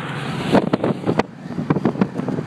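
Steady road and wind noise inside a moving car's cabin. Over it come a run of sharp knocks and rustles about half a second in and again near the end, from handling and rummaging close to the microphone.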